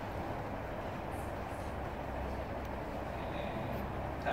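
Steady room noise: an even hum and hiss with no distinct events.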